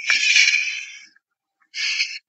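A horse snorting: a loud blow of air through the nostrils lasting about a second, then a shorter second snort near the end.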